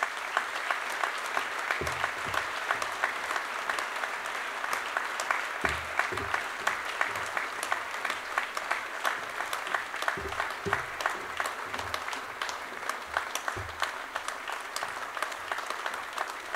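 Audience applauding steadily, with a few short, dull low thuds mixed in.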